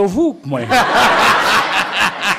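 A man's voice briefly, then an audience laughing loudly from about half a second in, held through to the end.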